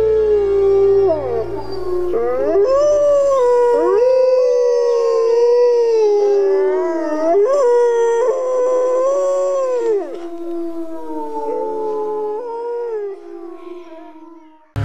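A chorus of wolves howling: several long, overlapping howls that rise and fall in pitch, thinning to one or two voices and fading near the end. A low music drone dies away in the first few seconds.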